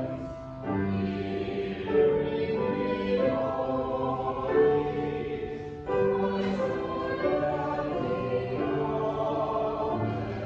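Choir singing slow, sustained notes in phrases, with short breaks between phrases about half a second and six seconds in.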